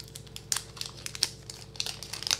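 Upper Deck MVP hockey card pack wrapper crinkling and tearing as it is worked open by hand, with scattered sharp crackles.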